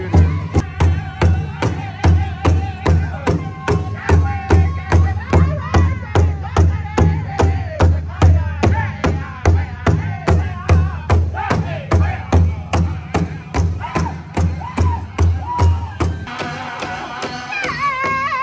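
Powwow drum group singing an intertribal song: several drummers striking a large powwow drum together in a steady beat of about three strikes a second, with loud, high group singing over it. The drumbeat drops out about two seconds before the end while the voices carry on.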